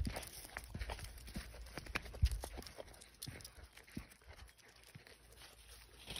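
Footsteps crunching irregularly on a dirt path strewn with dry leaves and twigs, with a few dull thumps, the loudest about two seconds in.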